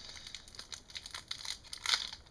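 Plastic wrapper of a block of black modelling clay crinkling in short, irregular crackles as it is worked open by hand, louder just before the end.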